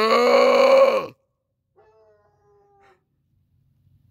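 A loud, drawn-out cry about a second and a half long, gliding up at its start and then held steady, followed about a second later by a fainter, higher, steady whine.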